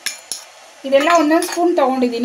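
A few light clicks of a spoon and small steel bowl over a steel plate as powder is scraped out, followed from a little under a second in by a woman's voice speaking.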